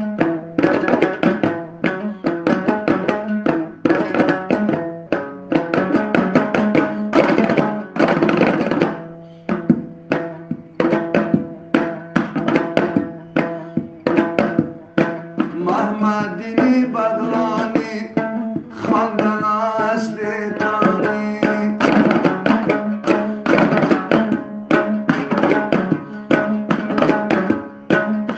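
Afghan dambura, a long-necked lute, strummed fast and percussively in an instrumental passage, with steady drone notes under dense rhythmic strokes and percussion.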